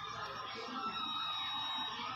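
Faint background of voices and music, with a thin steady high tone for about a second in the middle.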